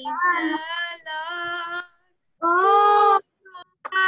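A girl singing a Christian worship song solo, unaccompanied, in held notes broken by short pauses. The sound comes over a Zoom call and drops to dead silence between phrases.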